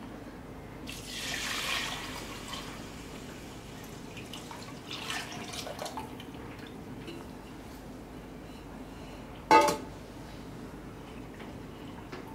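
Water being poured into a stainless steel pot of soaked rice and stirred with a silicone spatula, the pouring loudest in the first few seconds. A single sharp knock comes near the end.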